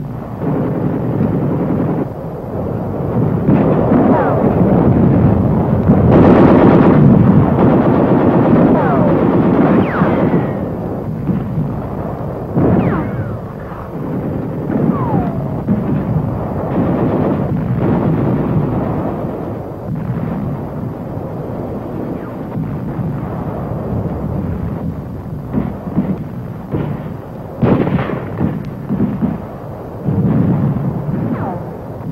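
Battle sounds of gunfire and shell explosions in dense succession, loudest about six to ten seconds in, with a few falling whistles among the blasts.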